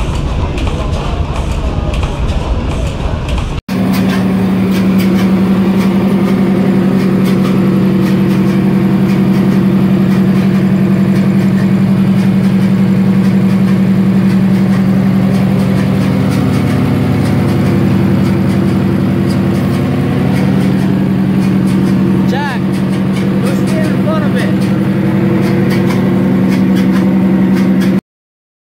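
A large Fairbanks Morse Model R stationary engine runs with a low, rhythmic beat. After an abrupt switch, a Fairbanks Morse opposed-piston two-stroke diesel runs steadily with a strong low hum that dips briefly twice in the later part.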